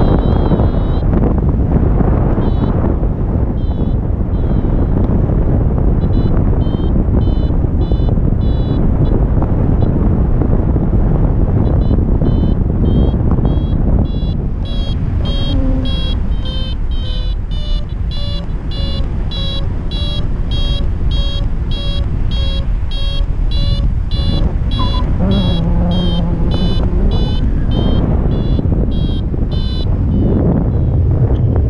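Airflow rushing loudly over the microphone in paraglider flight, with a paragliding variometer beeping: a few short high beeps at first, then a fast, regular train of beeps through the second half, the vario's signal that the glider is climbing in lift.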